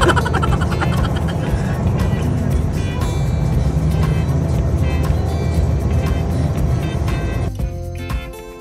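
Steady low rumble of a car driving at highway speed, heard from inside the cabin, with music playing underneath and a laugh at the very start. Near the end the road rumble drops away and the music comes to the fore.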